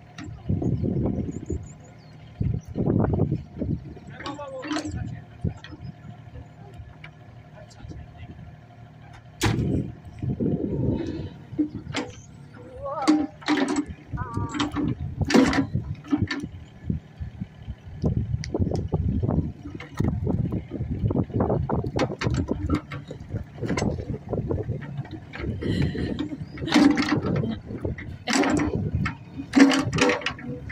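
Yanmar mini excavator's engine running as it digs and moves its arm and bucket, with an uneven low rumble throughout.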